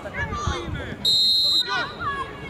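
A referee's whistle: one short, steady, shrill blast of about half a second, a little past the middle, the loudest sound here. Spectators' voices come just before and after it.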